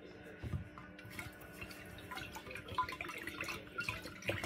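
Faint water sloshing and scattered small clinks in a glass pitcher as Epsom salt is stirred into the water with a wooden spoon.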